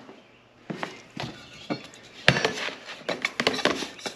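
Metal litter scoop digging and scraping through cat litter in a plastic litter box, in irregular scrapes and clicks with one sharp knock a little past halfway.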